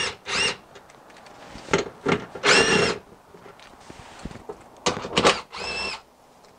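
Cordless power driver with a socket spinning out 10 mm splash-plate bolts: a series of short whirring runs, each under half a second, with brief pauses between them.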